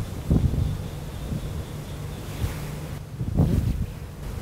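Wind buffeting the microphone: a steady low rumble with two stronger gusts, one just after the start and one near the end.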